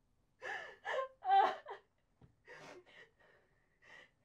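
A woman sobbing in gasping breaths: a cluster of loud, ragged gasps in the first two seconds, then quieter ones.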